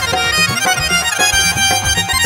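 Instrumental passage of a live Krishna bhajan band: a sustained melody line over a steady, repeating drum beat, with no singing.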